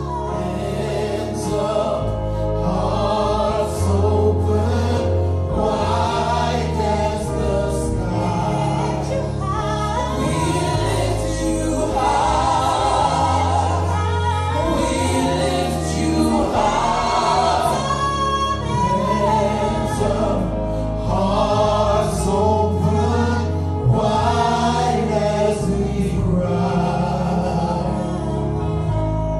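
Live gospel worship song: a group of male and female singers singing together over a band with held bass chords that change every few seconds. The words sung include "We lift you high" and "Hands up, hearts open, wide as we cry."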